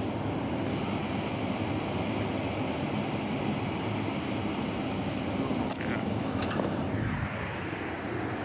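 Steady low rumble of outdoor urban background noise, with a few faint clicks about six seconds in.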